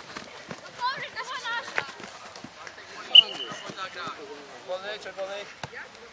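Players' voices calling across a ball game at some distance, with scattered thuds and footfalls. A single sharp knock about three seconds in is the loudest sound.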